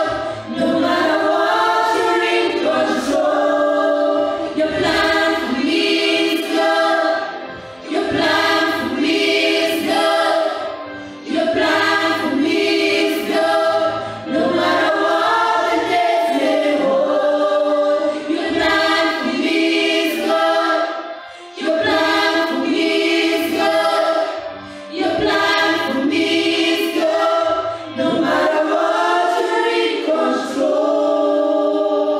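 Gospel praise song sung by a small mixed group of three women and a man into microphones, in long held phrases with short breaks between them.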